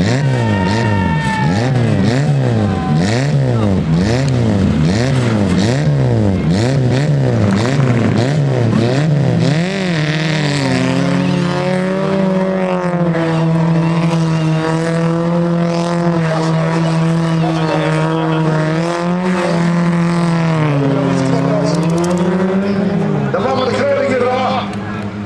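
Autocross car engine revving up and down in quick swings, about one a second, as it slides on a dirt track. From about ten seconds in it holds fairly steady high revs, dipping briefly near the end.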